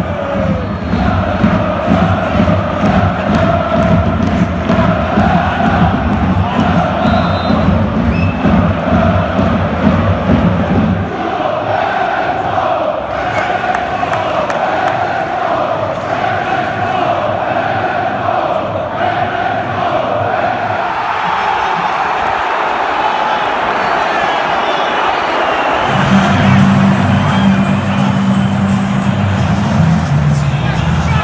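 A large football stadium crowd chanting and singing together, a wavering sung line over the mass of voices. A low rumble runs underneath for roughly the first ten seconds, and a louder, deeper layer comes in about four seconds before the end.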